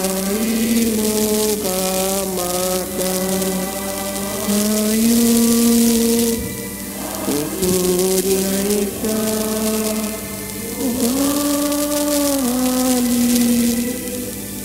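A song with a solo melody of long held notes, sung in phrases with a short pause about halfway through, over a steady hiss.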